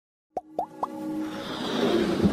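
Animated-intro sound effects: three quick plops about a quarter second apart, each sweeping upward in pitch and ending a little higher than the last, then intro music swelling and building.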